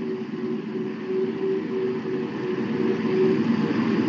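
Steady background noise with a faint intermittent hum, picked up by an open microphone and carried over an online voice chat between stretches of speech.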